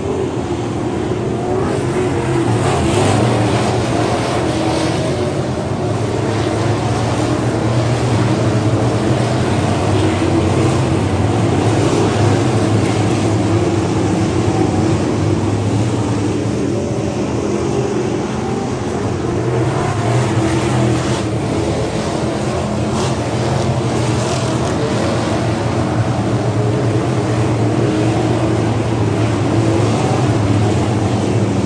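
A pack of dirt-track sport modified race cars running at speed around the oval, their V8 engines making a loud, continuous drone that swells and eases slightly as the cars come past.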